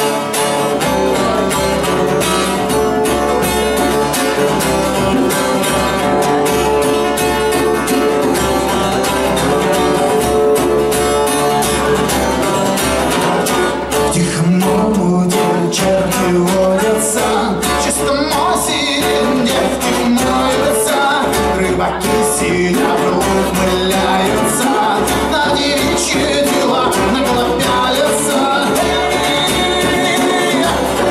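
Acoustic guitar strummed in a fast, steady rhythm while a man sings into a microphone: a live acoustic song.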